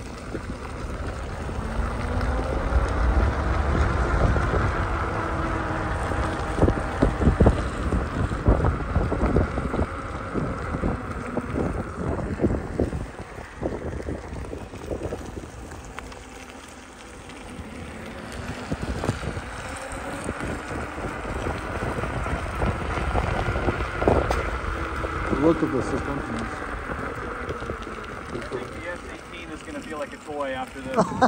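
Wind rushing over the microphone and tyre noise on wet asphalt as an electric unicycle rides along. A faint whine glides up and down in pitch, and the noise swells, dips about halfway through, then swells again.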